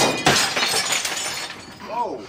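Sledgehammer blow smashing into the camper's interior: a sharp crash and a second hit just after, then about a second and a half of shattering, crackling debris that dies away.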